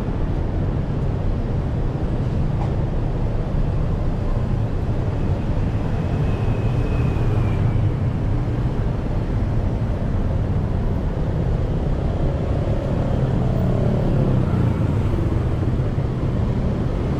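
Busy city road traffic: a steady low rumble of car engines and tyres passing. A brief high whine, falling slightly, comes about seven seconds in, and an engine rises and falls in pitch near the end.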